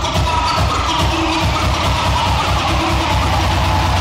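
Electronic dance music mixed by a DJ: a steady beat with deep, pulsing bass, over which a tone slides slowly down in pitch.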